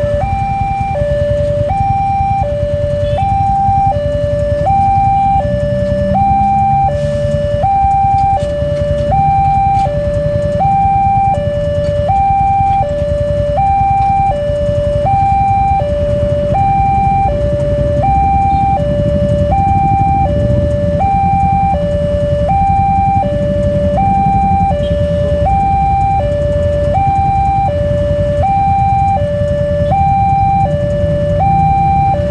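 Railway level-crossing warning alarm sounding a steady two-tone electronic signal, alternating between a high and a low note about every three-quarters of a second, the sign that the barrier is down and a train is coming. A steady low rumble runs underneath.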